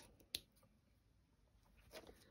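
Near silence, broken by a single sharp click about a third of a second in and a fainter tick near the end.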